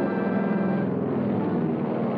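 Car engine running steadily, an even drone with no breaks.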